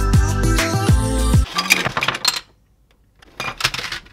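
Background music with a beat that cuts off about a second and a half in, followed by a clatter of miniature plastic dollhouse furniture spilling out of a clear plastic packaging tray. A second, shorter clatter comes near the end.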